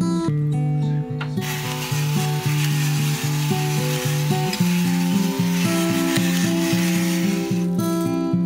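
Pepper mill grinding black pepper steadily for about six seconds, starting a little over a second in, over acoustic guitar background music.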